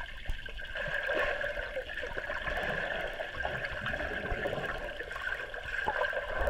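Swimming pool water heard from under the surface: a muffled, steady murmur of water with a faint constant hum and small scattered clicks.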